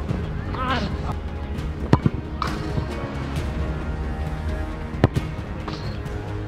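A football kicked with a sharp thump at the very start, followed by more single ball thumps about two seconds in and about five seconds in, over background music.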